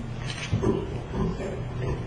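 Indistinct low voices and short murmurs away from the microphone, over a steady low electrical hum.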